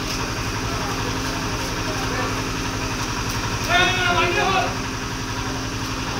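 Steady low hum of an idling engine running throughout, with a man's voice calling out loudly about four seconds in.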